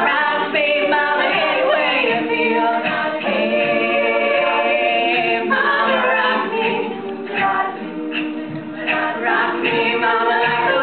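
Women's a cappella group singing live, a lead voice over sung harmony and backing voices with no instruments. The singing grows softer for a couple of seconds near the end before coming back up.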